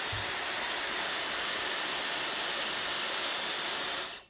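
Dyson Airwrap hair styler running with its curling barrel attachment: a steady rush of blown air with a thin high whine from its motor, cutting off suddenly at the very end.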